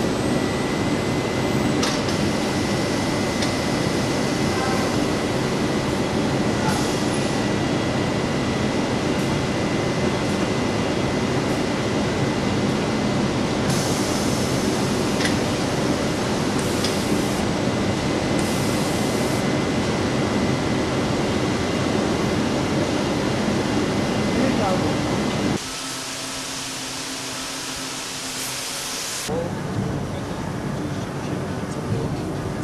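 Textile factory machinery running: a loud, steady mechanical drone with a thin, steady high whine over it. Near the end the sound drops abruptly to a quieter, different machine noise.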